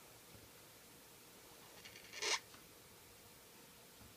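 Brush-tip Faber-Castell PITT Artist Pen marker drawing a stroke on paper: a short soft swish about two seconds in, over quiet room tone.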